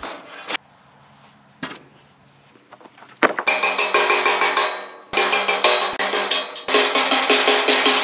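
A few faint knocks, then from about three seconds in rapid hammer blows on the rusty steel angle-iron frame of a car-hauler trailer. The steel rings under the blows, which come in three bursts with brief breaks between them, as old deck fasteners are knocked off the frame.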